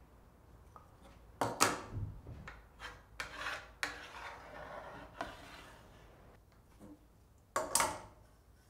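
Marking-out tools, a metal square and a spirit level, knocked down and slid on a hardwood slab, with scratchy rubbing between. The sharpest knocks come about a second and a half in and just before the end.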